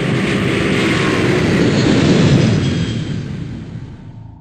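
Light single-engine propeller aircraft running as it rolls along a grass runway, heard from the field, growing a little louder and then fading away near the end.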